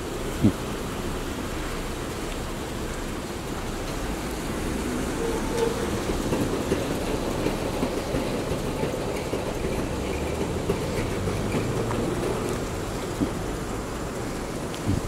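Steady low rumbling background noise outdoors, with a brief sharp knock about half a second in and a few faint ticks.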